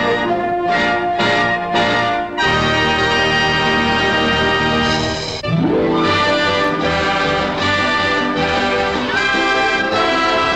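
Orchestral end-title music from a 1940s film soundtrack: short repeated chords for the first two seconds or so, then held chords, and a rising sweep about five and a half seconds in that leads into a new full-orchestra phrase.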